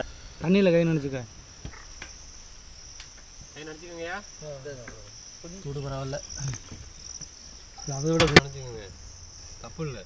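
Crickets chirring steadily in a high band, under short stretches of people talking and one sharp knock about eight seconds in.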